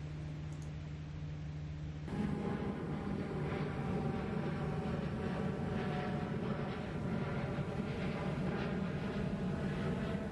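A steady, distant engine drone that becomes fuller and louder about two seconds in.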